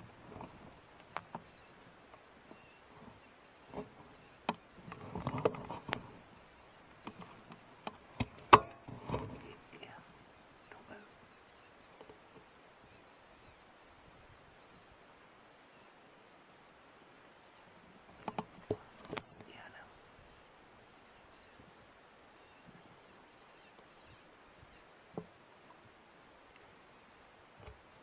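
Mostly quiet, broken by scattered sharp clicks and knocks, one louder than the rest about eight and a half seconds in, and a brief stretch of low whispered voices about five seconds in.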